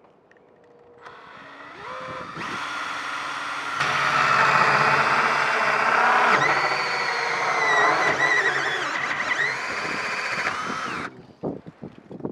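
Cordless drill cutting a hole up through fiberglass composite with a hole cutter. It starts faintly about a second in, gets louder twice as the cutter bites, runs with a wavering whine, and stops shortly before the end as it nears breaking through.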